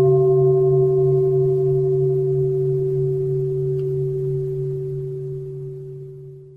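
A Buddhist bowl bell left ringing: a low steady hum with a few clear higher tones above it, slowly fading.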